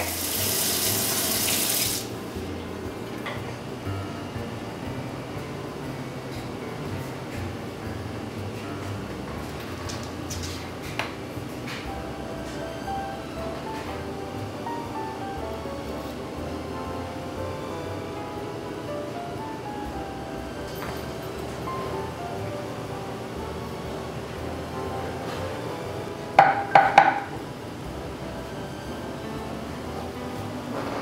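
Kitchen tap running water into a baby bottle, stopping abruptly about two seconds in. Quiet background music follows, with a short burst of several loud strokes near the end.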